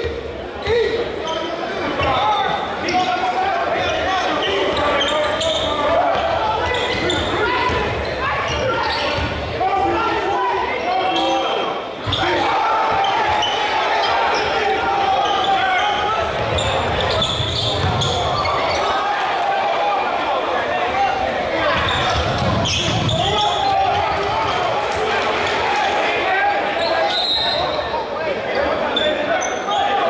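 Spectators talking and calling out in a gymnasium during a live basketball game, over a basketball bouncing on the hardwood floor.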